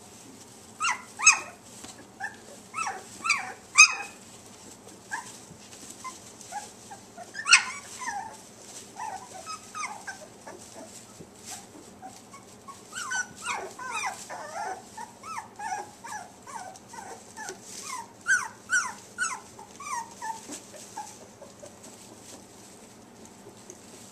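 Young border collie puppies whimpering in short high-pitched cries, some sliding down in pitch. The cries come in scattered bursts, the loudest in the first eight seconds, then a busy run of quicker cries through the second half.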